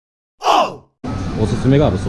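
A single short sigh falling in pitch, about half a second in, out of silence. From about a second in, shop room noise and voices.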